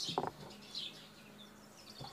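Small birds chirping in short high calls, repeated every half second or so, with a brief clatter just after the start.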